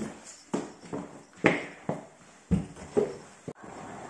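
Footsteps on a hard floor, a sharp knock about twice a second as someone walks briskly. Near the end they give way suddenly to a steady rush of outdoor air noise.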